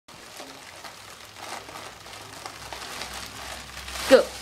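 Faint, irregular crinkling of a foil birthday balloon squeezed in the hands while helium is sucked out of it by mouth.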